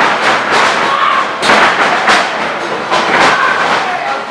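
Wrestlers' feet and bodies hitting the canvas of a wrestling ring as they run and grapple: an uneven series of sharp thuds and slaps, two or three a second.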